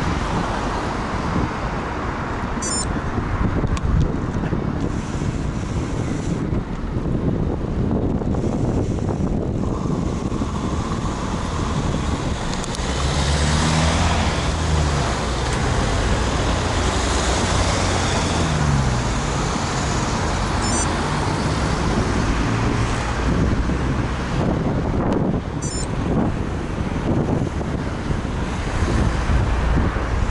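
Wind noise rumbling on a moving bicycle camera's microphone, mixed with road traffic. Around the middle a car engine passes close, its pitch sliding up and down.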